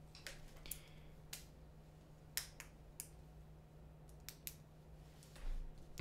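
Faint, irregular clicking at a computer: about eight sharp, separate clicks spread over a few seconds, over a steady low electrical hum.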